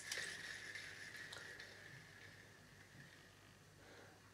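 Jaxon Saltuna 550 saltwater spinning reel spun by its handle: a click, then a faint, even whir from the turning rotor and gears that dies away over about three seconds as the reel spins down freely.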